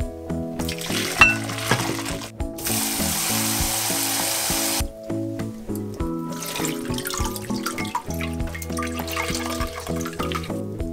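Water splashing into a glass bowl in a stainless steel sink as blanched spinach is drained and rinsed. A steady running stream lasts about two seconds in the middle, then hands swish the spinach in the water. Background music plays over it throughout.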